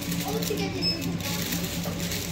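Shop background: faint voices and a low steady hum, with no single loud event.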